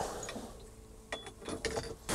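Mostly quiet, with a handful of faint, sharp clicks from small handled gear in the second half.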